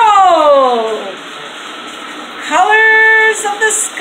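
A child's voice in a long downward pitch slide at the start, then after a pause a single held sung note near the end.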